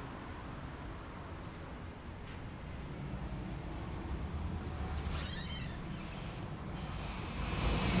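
Street ambience: a steady low rumble of traffic, with a brief faint high wavering sound about five seconds in.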